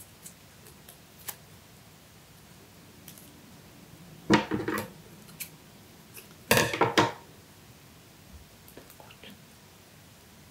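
Scissors snipping floral tape on a beaded wire stem: two short bursts of cuts, about four seconds in and again about two seconds later.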